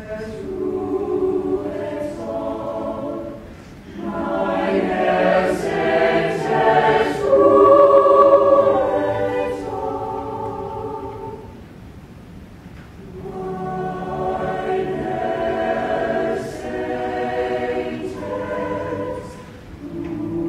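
Mixed youth chamber choir singing unaccompanied in harmony. The phrases swell to their loudest about eight seconds in, ease to a soft lull a few seconds later, then a new phrase builds.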